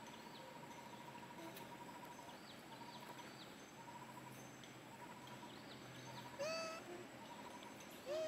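Faint outdoor background of repeating bird trills and chirps; about six seconds in, one short, loud, rising squeal from a macaque.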